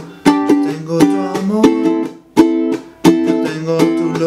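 Tenor ukulele strummed in a steady rhythm, moving from a G chord to A minor. Sharp muted chop strokes fall between the ringing strums.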